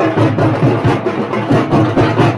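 A troupe of men beating large drums with sticks together in a loud, fast, driving rhythm of dense, even strokes.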